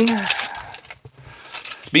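Soft crinkling and rustling of a Pokémon booster pack's foil wrapper as it is opened and the cards are slid out, between spoken words.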